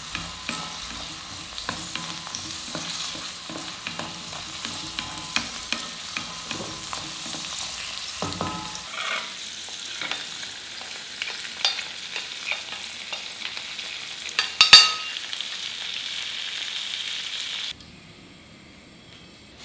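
Cashews and raisins frying in ghee in a metal kadai: a steady sizzle with many small clicks and scrapes of a spatula stirring against the pan. About halfway through, the low rumble under it stops and the sizzling nuts are scraped out with a spoon. There is a single loud metal knock near the end.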